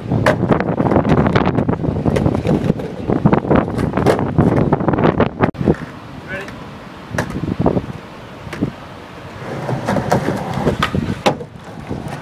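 Skateboard wheels rolling over wooden boardwalk planks, a rumble with sharp clacks as the wheels cross the plank joints. The rolling stops abruptly about five and a half seconds in. After a quieter stretch with a few single clacks, the rolling starts again near the end.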